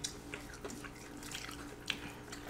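Faint eating sounds: a few soft mouth clicks and smacks while chewing fried cheese sticks, with a sharper click just before the end, over a faint steady hum.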